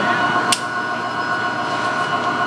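Steady drone of power-station machinery with several constant humming tones, and one sharp click about half a second in as band pliers close a metal leg band on a falcon chick.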